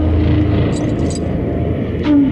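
A low, steady rumble in the film's soundtrack, with no held musical note.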